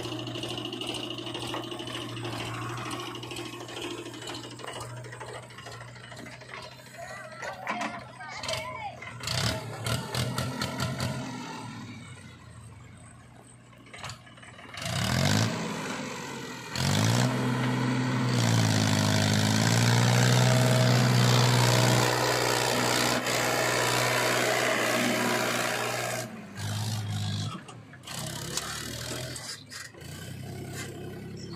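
Diesel engines of a backhoe loader and a tractor running at a dig. About fifteen seconds in, an engine revs up with a rising pitch and runs hard under load for several seconds, the loudest part. It then drops back to a steadier run.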